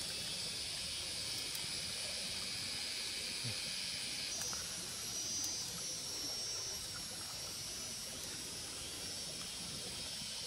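Steady high-pitched outdoor drone of insects, shifting in pitch about four seconds in, with a few faint ticks.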